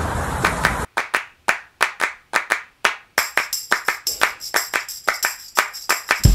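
Rhythmic clap-like percussion at the start of outro music, sharp hits about four a second. A high, steady shimmer joins about three seconds in. Before it, under a second of steady outdoor background noise that cuts off suddenly.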